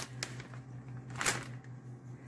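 Light rustling of a plastic bag of shredded cheddar as cheese is sprinkled by hand, with a small click near the start and a short rustle a little over a second in.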